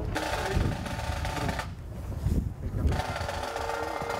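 A bagpipe starting up. A wavering pipe sound plays for about the first second and a half, then breaks off briefly. Steady drones come in from about three seconds on, over gusts of wind rumbling on the microphone.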